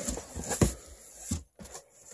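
Handling noise from a cardboard shipping box being opened, with the flaps pulled back over plastic air-pillow packing. There is a sharp knock a little over half a second in and a smaller one about a second later.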